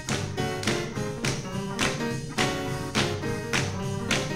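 Gospel band music playing an instrumental passage with a steady beat, a sharp stroke about every 0.6 s, and the choir clapping along.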